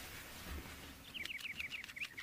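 A small bird twittering: a quick run of short, high, falling chirps, about eight a second, starting about a second in.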